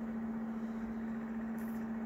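A steady one-tone hum over faint background noise, with a brief faint high rustle about one and a half seconds in.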